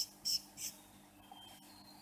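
Whiteboard marker squeaking across the board in three short strokes during the first second, with a faint brief squeak later on.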